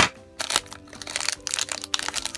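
Yellow foil blind bag crinkling in irregular crackles as it is handled and opened, over soft background music.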